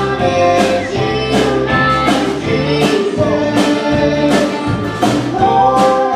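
A country band playing live: electric guitar, upright bass and a wooden-shelled drum struck on a steady beat, with a woman singing over them.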